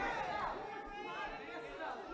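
Faint murmured voices in a large hall, a low chatter of a few people speaking quietly.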